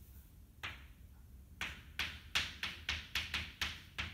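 Chalk writing on a blackboard. One short tap comes just over half a second in, then a quick run of about ten short chalk strokes and taps from about a second and a half in until near the end.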